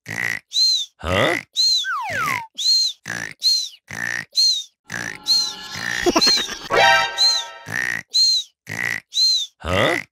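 Playful cartoon music loop: a quick, steady rhythm of short sounds topped with chirpy whistle tones, with a falling slide whistle about two seconds in.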